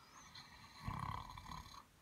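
A woman's faint, breathy sigh that swells about a second in and fades away.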